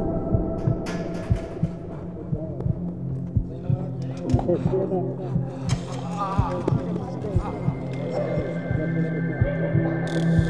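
Film soundtrack score: a steady low drone runs throughout, with repeated low thumps under it. In the middle, muffled, wavering voices come through with no clear words.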